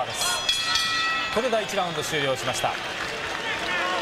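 A boxing ring bell is struck once near the start and rings for about a second, marking the end of a round. Voices call out over arena crowd noise.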